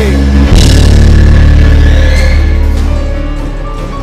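Music with a loud, held low chord that swells about half a second in and fades away over the last second or so.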